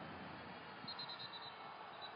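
Faint, steady background noise of a basketball arena under the game footage, with a brief faint high-pitched squeak about a second in.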